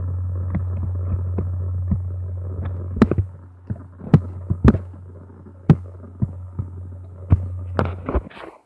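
Handling noise on a phone's microphone: a steady low hum, then from about three seconds in a string of about eight sharp knocks and clicks, uneven in spacing, as the phone lies on a surface and is touched and shifted.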